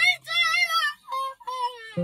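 A high-pitched voice singing short phrases with a wavering vibrato, over the fading tail of a low plucked-string note; a new plucked chord rings out at the very end.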